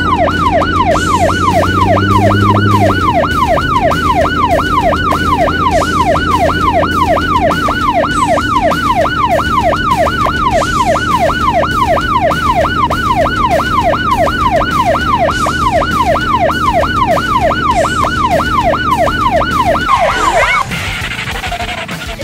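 Police siren in a fast yelp: a rapid rising and falling wail a little over twice a second, with a steady low drone underneath. It cuts off about 20 seconds in.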